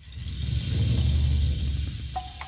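Deep rumble of thunder with a hiss over it. It starts suddenly, swells for about a second, then slowly dies away.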